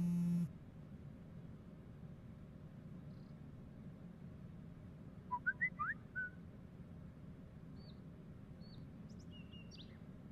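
Birds chirping over a faint steady room hum: a quick cluster of short chirps about five to six seconds in, then a few thin, high chirps near the end.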